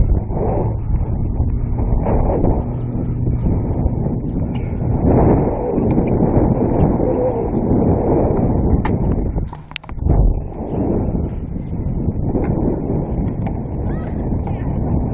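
Wind buffeting a body-worn action camera's microphone as a steady, loud rumble, with a few sharp clicks a little under two-thirds of the way through.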